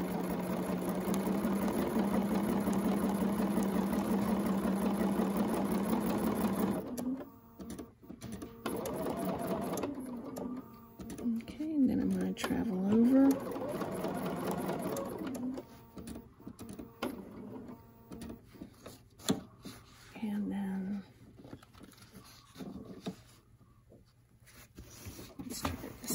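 Bernina domestic sewing machine stitching, running steadily at speed for about seven seconds, then in short starts and stops with the motor speeding up and slowing down: free-motion ruler quilting around an acrylic leaf template.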